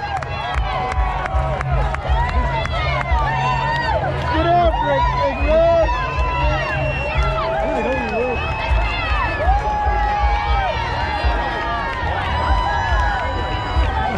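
Crowd of football fans shouting and cheering with many overlapping voices and some long held whoops, greeting the players as they walk through.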